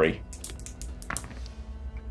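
A pair of six-sided dice rolled into a snap-corner dice tray, clattering in a quick run of clicks that stops just after a second in.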